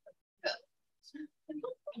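A single short, sharp vocal sound about half a second in, followed by speech from about a second in.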